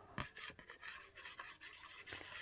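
Faint, irregular scratching of a fine-tipped glue bottle's nozzle drawn across cardstock as a line of glue is laid down.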